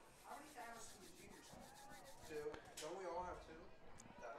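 Faint, indistinct voices talking in the background, with one short click about three-quarters of the way through.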